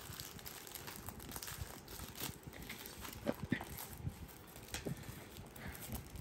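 Faint, scattered taps and light knocks of a boxed diamond painting kit and its plastic packaging being handled on a wooden table.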